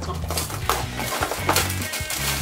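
Clear plastic wrapping on a toy box crinkling and rustling in several quick crackles as it is handled and pulled off, over background music with a steady bass line.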